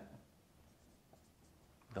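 Dry-erase marker writing on a whiteboard, a faint stroking sound.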